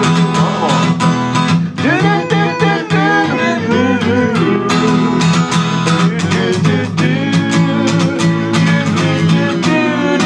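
Acoustic guitar strummed in a steady country rhythm, with several men's voices singing along in harmony.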